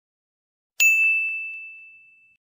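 A single bell-like ding from a subscribe-button sound effect, struck about a second in and ringing out as it fades, with a few faint clicks under it.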